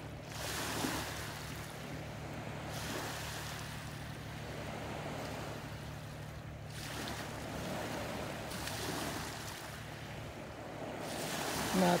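Open water washing and lapping around a small boat, with wind on the microphone, swelling and easing every few seconds over a steady low hum.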